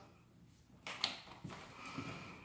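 Quiet room after singing. A soft knock or click comes about a second in, then faint breathy sounds as a person moves close.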